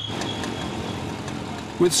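Street traffic: motor scooters and small engines running in a steady hum. A man's voice starts near the end.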